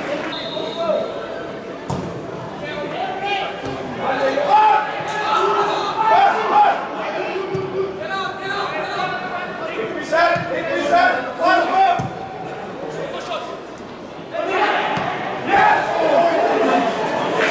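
Footballers shouting and calling to one another on the pitch, echoing around a near-empty stadium, with the sharp thud of the ball being kicked a few times.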